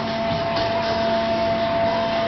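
Amusement-ride machinery running with a steady hum of several held tones over a murmur of background noise as the ride's arms swing.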